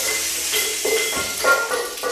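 Children's percussion ensemble playing: irregular strikes on ringing metal instruments such as gongs and cymbals over a steady hiss, with the loudest strike about one and a half seconds in.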